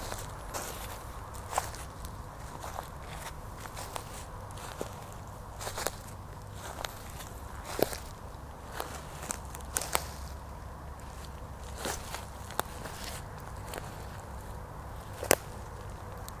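Footsteps through dry forest leaf litter: irregular crunches and twig snaps, about one a second, over a steady low hum.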